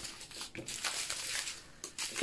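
Small plastic bags of diamond painting drills crinkling and rustling as they are handled, in a few short, soft bursts.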